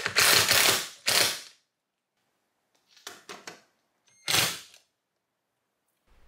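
A cordless drill drives mounting screws into a garage wall in two short bursts. About three seconds in comes a cluster of quick plastic clicks and snaps as the wireless garage door wall control is fitted, then one more short burst.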